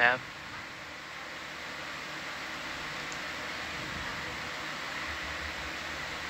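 Steady hiss on the control-room communications audio, growing a little louder over the first two seconds and then holding even.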